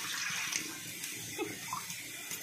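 Freshly poured rice-flour batter for chitau pitha sizzling in a hot pan over a wood fire, a steady hiss.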